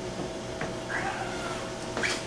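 A cat meows once about a second in, a short call that falls in pitch.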